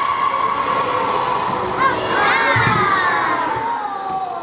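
Children yelling with long, high, drawn-out cries that overlap. In the last two seconds one cry slides down in pitch.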